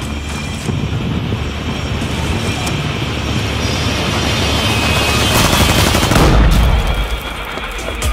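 Film trailer soundtrack: a dense rush of noise and music that swells steadily to a crescendo, with a deep boom about six seconds in, then drops back.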